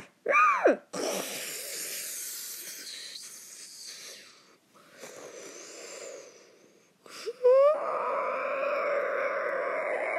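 A person making dinosaur noises with their voice: a short rising-and-falling cry, then a hiss lasting a few seconds, then, near the end, a quick rising chirp that runs into a long, steady wailing screech.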